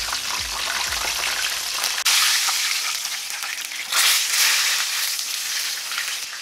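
A whole flour-coated tilapia sizzling as it shallow-fries in hot vegetable oil. The sizzle is steady and gets suddenly louder about two seconds in and again about four seconds in.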